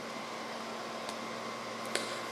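Steady low background hiss with a faint hum, with a faint tick about a second in and a light click near the end.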